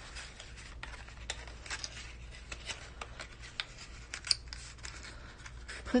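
Cardstock box lid being folded and tucked together by hand: quiet rustling with scattered small clicks and crackles of the stiff paper.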